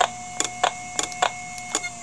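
Voice coil actuator of a failing IBM Deskstar ("DeathStar") hard drive, heard through an electromagnetic pickup coil and small amplifier: a regular train of sharp clicks, about three or four a second, over a steady tone. The heads are swinging back to the stops and trying again because the drive cannot load its firmware from the reserved area, so it never comes ready.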